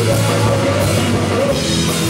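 Psychobilly band playing loud rock music live, with drum kit and electric guitar.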